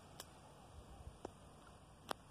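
Near silence: faint outdoor background with two small clicks.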